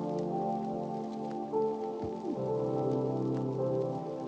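Lofi hip-hop music: soft sustained chords over a bass line, with a short pitch slide a little past two seconds. A steady rain-like hiss and patter is layered under the music.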